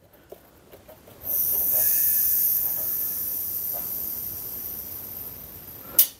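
Compressed air hissing through an air compressor's pressure regulator as its knob is turned up. The hiss starts about a second in and slowly fades as the line to the pressure switch fills toward 60 psi, with a brief click at the very end.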